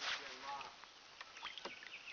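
Faint water sounds from a kayak being paddled, with a brief whine-like sound about half a second in and a light knock near the end.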